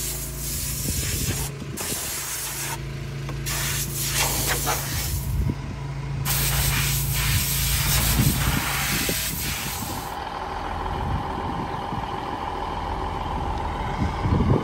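Compressed-air blow gun hissing in bursts with short breaks, then in a longer steady blast, as dust is blown out of a semi truck's radiator.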